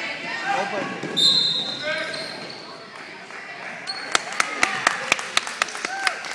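Basketball dribbled hard on a hardwood gym floor during a fast break: a quick run of sharp bounces, about four a second, in the last two seconds, echoing in the hall. Spectators shout and cheer over the first two seconds, with a brief high-pitched squeal about a second in.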